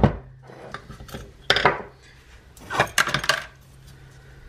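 Metal motorcycle carburettor parts handled on a wooden workbench: a few sharp clinks and scrapes, the loudest about one and a half seconds in and a quick cluster near three seconds, as a float bowl is taken off the carburettor bank.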